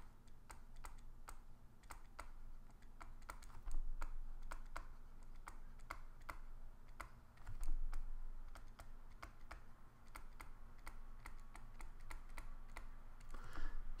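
A pen stylus tapping and scratching on a drawing tablet as handwritten letters are put down stroke by stroke: a faint, irregular run of sharp clicks, about three a second, over a low steady hum.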